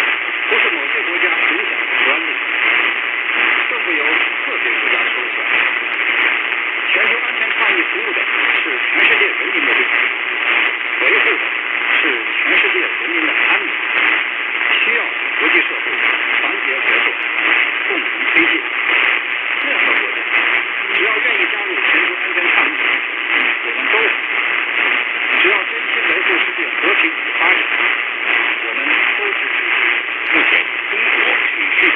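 Long-distance medium-wave AM reception on 585 kHz through a portable radio's speaker: a voice beneath steady hiss and static, with no sound above about 4 kHz.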